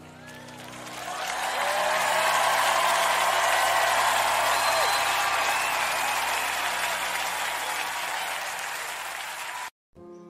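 A live congregation applauding and cheering after a worship song ends, with a few shouts above the clapping. It swells about a second in, fades slowly, and cuts off suddenly near the end.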